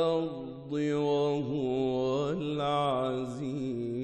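A solo male voice reciting the Quran in melodic tajweed style, drawing out long, ornamented held notes. The line breaks briefly about half a second in.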